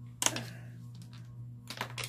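Sharp clicks and clatter of makeup tools being handled as one brush is set down and another picked up: a short clatter about a quarter second in, then a few more clicks near the end.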